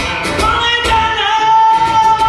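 A man singing to his own strummed acoustic guitar; about a second in he starts a long, high held note.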